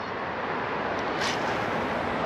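Steady outdoor background noise: an even rushing hiss with no distinct events, growing slightly louder about a second in.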